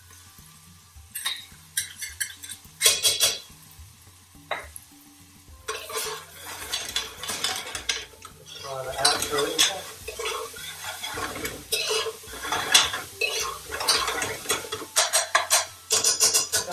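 Metal ladle knocking and scraping against a stainless steel pressure cooker pot as garlic-ginger paste goes in, a few sharp clinks at first. From about six seconds in, steady stirring with the ladle scraping the pot base while the paste and onions sizzle.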